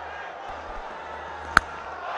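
Stadium crowd murmuring steadily, with a single sharp crack of a cricket bat striking the ball about one and a half seconds in.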